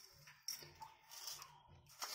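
Faint scrape and clinks of a steel spoon scooping coarse granulated sugar from a plastic container, with a sharp click about half a second in.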